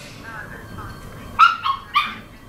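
Dogs at play giving three short, high yips in quick succession in the second half.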